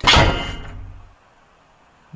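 A sudden heavy crash sound effect from the cartoon, loud at first and dying away over about a second before cutting off.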